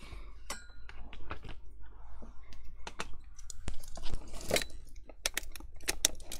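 Handling noise from a Sizzix hot glue gun and its plastic stand being moved about on a desktop while the gun's cord is plugged in: irregular clicks, knocks and rustling, with a few sharper clicks near the end.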